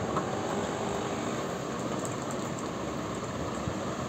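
Steady background noise, even and unchanging, with a single light click just after the start.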